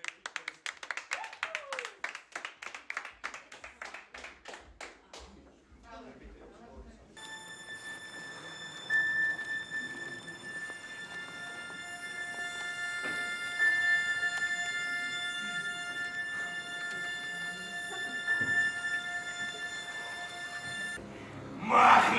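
A group clapping together in rhythm, quickening over about six seconds. After a short lull comes music of long held notes that runs until just before the end.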